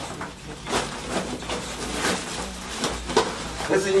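Scattered light knocks and scrapes of fir sawdust being scooped from a sack and spread by hand over a fire pit to kindle it, a few spaced a second or so apart.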